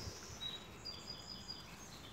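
Faint birdsong: a few thin, high whistled notes with short gaps between them, over quiet outdoor background noise.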